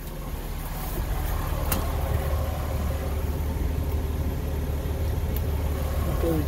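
Freightliner Cascadia truck's diesel engine idling, heard from inside the cab as a steady low rumble that grows louder over the first second or so and then holds. A single brief click sounds a little under two seconds in.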